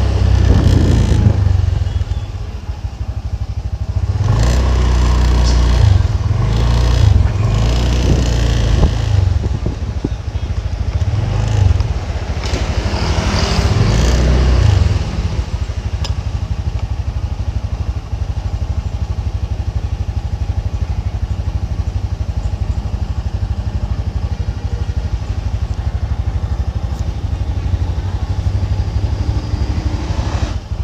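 Motorcycle engine and road noise while riding, which settles about halfway through into a steady, even idle as the bike stops.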